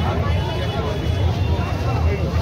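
Crowd of marchers on foot chattering, many voices overlapping with no single speaker standing out, over a steady low rumble.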